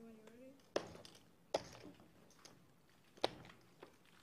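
A few sharp clicks and taps on a poker table as the dealer taps the felt and turns the river card, three of them standing out, with a brief faint murmur of a voice at the start.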